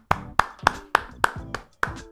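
A steady series of sharp percussive strikes, about three and a half a second, each with a brief ringing tone after it.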